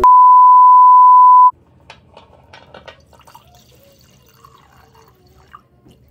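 Loud steady test-card beep, the reference tone that goes with TV colour bars, held for about a second and a half and cutting off suddenly. Then faint sounds of wine being poured into a glass.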